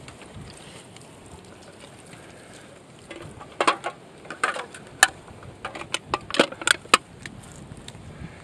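Empty aluminium beer cans clinking and crinkling against each other as they are picked up and stacked by hand, a quick run of sharp clinks starting about three and a half seconds in.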